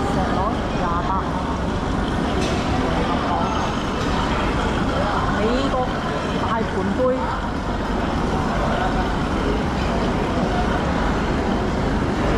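Steady din of a crowded restaurant hall: many voices babbling indistinctly over a low, even rumble.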